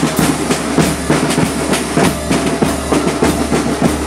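Marching drum corps playing: snare drums beating out a quick, even rhythm over bass drums, with hand cymbals.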